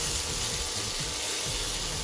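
Chopped onion and garlic sizzling in oil in a pan, with tongs scraping and pushing them across the pan bottom.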